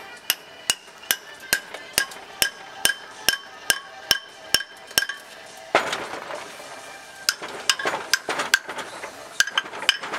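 Small club hammer striking a steel chisel set in the sawn cut line of a stone block to split a piece off: steady ringing taps about two a second for the first five seconds. Then comes a longer, rougher grating noise, followed by quicker, irregular strikes.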